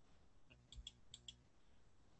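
Near silence broken by a few faint clicks at a computer, mostly in two quick pairs near the middle, as the screen share is brought up.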